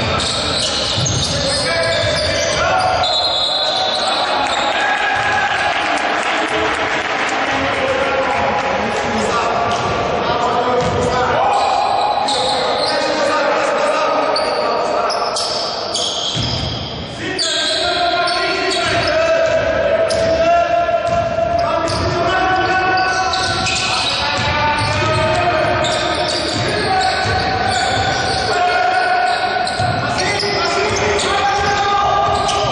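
Basketball bouncing on a hardwood court during play, with players' voices and calls ringing through the sports hall.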